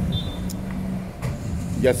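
Street traffic: a low steady rumble, with a nearby car engine running and one light click about half a second in.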